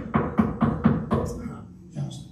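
A quick series of about seven knocks on a hard surface, struck by hand at about three or four a second and growing fainter. It is a sound effect for someone knocking his head against a wall.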